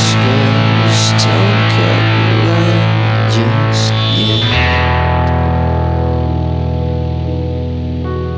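Instrumental outro of a British alternative-rock song: distorted, effects-laden electric guitar over a steady bass note. About halfway through, the dense playing stops and a held chord is left ringing, slowly fading.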